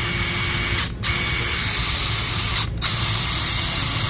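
DeWalt DCF894 20V brushless 1/2-inch cordless impact wrench spinning freely with no load on its high speed setting, very smooth. The trigger is let go and pulled again twice, about a second in and near three seconds, so the motor runs in three stretches.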